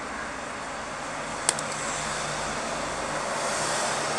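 Steady background noise with a distant engine's low rumble that swells and fades through the middle, and a single sharp click about one and a half seconds in.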